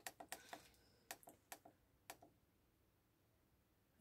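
Faint clicks of the push buttons on a Bentrup TC60 kiln controller's keypad being pressed by a gloved finger, about ten presses in quick runs over the first two seconds, then near silence.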